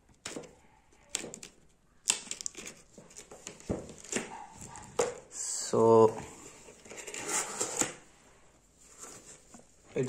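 A taped cardboard parcel being cut and torn open by hand: scraping, crinkling and tearing of packing tape and cardboard, with scattered clicks. A brief voiced sound, such as a hum or grunt, comes about six seconds in.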